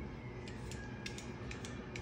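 Faint, scattered clicks and light scrapes of a handheld vegetable peeler working along an asparagus spear.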